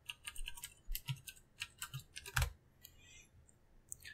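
Computer keyboard typing: a run of irregular keystrokes, with one heavier keystroke about two and a half seconds in.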